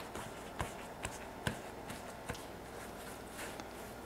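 Hands rolling baguette dough on a floured wooden bench: faint soft shuffling with a few light taps.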